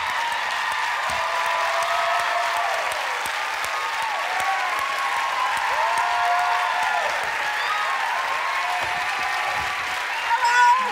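Large studio audience applauding and cheering, a dense steady clapping with many voices shouting and whooping over it.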